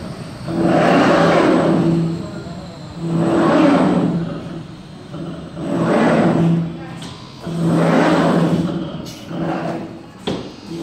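STRON automatic glass cutting machine's motor-driven cutting bridge traversing back and forth. Each pass is a whir with a steady hum that swells up and dies away, about five passes in quick succession.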